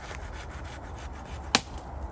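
Thick English ivy stems being pulled away from a tree trunk by gloved hands, with faint rubbing against the bark, then a single sharp snap about one and a half seconds in as a stem under tension pops loose from the tree.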